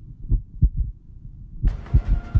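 Heartbeat sound effect: low thumps in lub-dub pairs, a pair about every second and a quarter. A rushing hiss swells in near the end.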